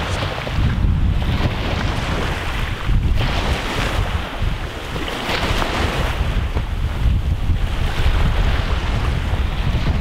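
Wind buffeting the microphone with a heavy, uneven rumble, over small waves washing against a rocky shore.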